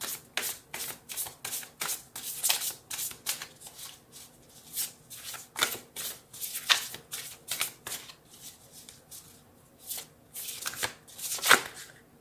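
A deck of tarot cards being shuffled by hand: a run of quick card flicks, about three a second at first, then sparser and uneven, with the loudest snap near the end.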